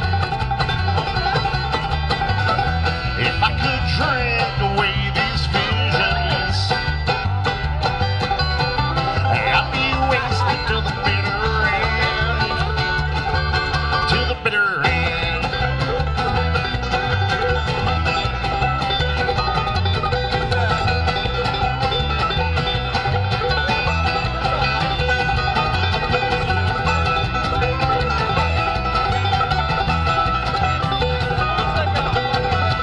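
Live acoustic string band playing an up-tempo bluegrass-style instrumental passage: banjo, upright bass and acoustic guitar over a driving bass rhythm, with a brief stop about halfway through.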